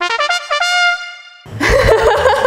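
Trumpet comedy sound effect: a quick run of short notes ending on one held note that fades out about a second and a half in. A woman's laughter starts near the end.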